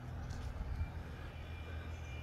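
LiftMaster LA400 linear-actuator gate operators running as they swing a pair of wrought iron gates open: a low steady hum, joined a little before a second in by a faint high whine.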